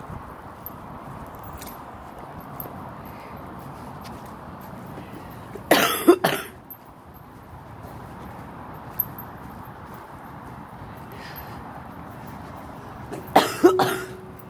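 A woman coughing in two short fits, one about six seconds in and one near the end, over a steady background hiss.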